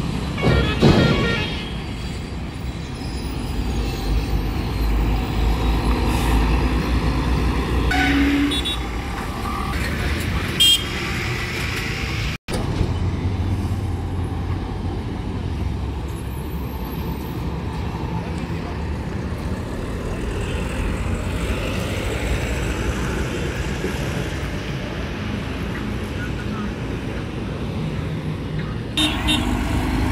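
Road traffic at a roadside bus stop: vehicle engines and tyres passing, with a few short horn toots. The sound cuts out for an instant about midway.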